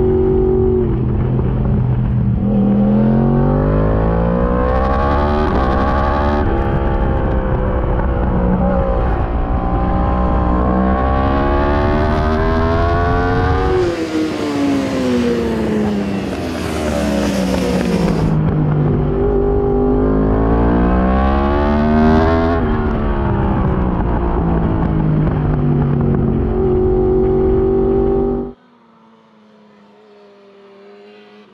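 Yamaha R1's inline-four racing engine heard from onboard, revving up through the gears and dropping off under braking several times. About halfway a few seconds of rushing noise take over. Near the end the sound drops suddenly to a faint, distant engine tone.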